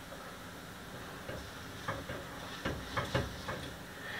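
Quiet stirring of white chocolate ganache in a metal bowl over a bain-marie, with a few faint clicks of the spoon against the bowl.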